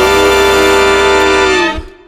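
Horn band with rhythm section holding the final sustained chord of the song, the lead singer holding one long note over it. Everything cuts off together about three-quarters of the way in on a short low hit, and the sound dies away quickly.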